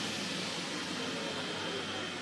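A steady mechanical drone from a neighbour's flat, the ongoing noise of the neighbour's work that keeps disturbing the flat.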